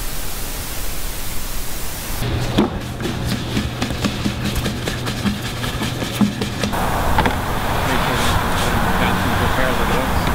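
A steady hiss. Then, after a cut, a low room hum with soft knocks as sourdough loaves are handled on a floured wooden board. Then a wash of road traffic noise with faint voices.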